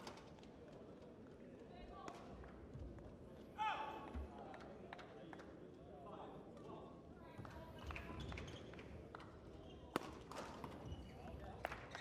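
Faint sounds of a badminton rally in a large hall: sharp racket strikes on the shuttlecock and brief squeaks of players' shoes on the court, over a low hall murmur.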